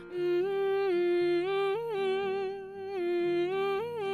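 A woman humming a wordless melody. She holds one steady note that lifts briefly twice, over quieter low held notes.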